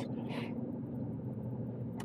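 Steady low rumble of a car's engine and road noise inside the cabin while driving, with a short breath about half a second in.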